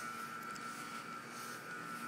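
Faint, steady background hum and hiss with a thin, high, steady whine, with no distinct events.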